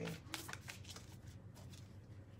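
Oracle card deck being shuffled by hand: a few soft card flicks, mostly in the first second, then fainter handling of the cards.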